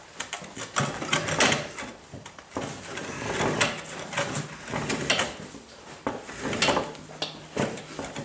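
No-Mar mount/demount bar levering a tire bead off a spoked motorcycle rim by brute force. The tire rubber and the bar scrape and rub against the rim in a series of uneven bursts as the bar is pulled around.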